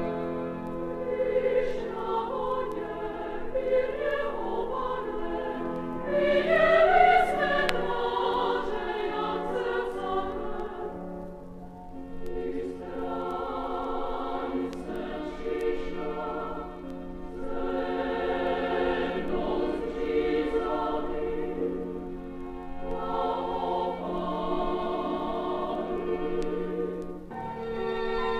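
Children's choir singing over a string-and-piano accompaniment. The music swells to its loudest phrase about six seconds in, dips briefly near the middle, and continues in shorter phrases.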